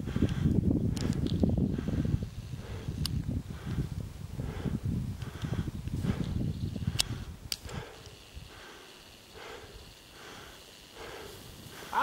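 Wind buffeting the microphone on an open snow slope, a low, gusty rumble that dies down about eight seconds in. After that come faint, repeated swishes of skis turning in powder snow as a skier comes closer.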